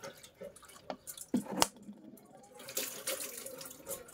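Kitchen handling sounds: a few sharp clinks and knocks of utensils and containers, the loudest about one and a half seconds in, then a steady hiss over the last second or so.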